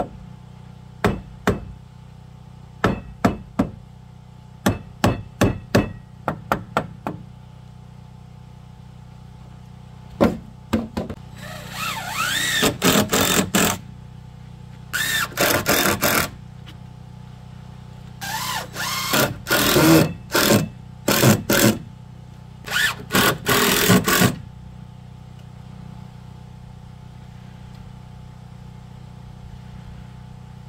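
A hammer tapping on a wooden deck rail: light knocks in quick groups of two to four over the first seven seconds. From about eleven seconds in, a hand tool is drawn back and forth along the wood in four bursts of rasping strokes.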